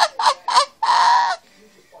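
A person laughing in short bursts, about four a second, ending in one longer, noisier cry just after a second in.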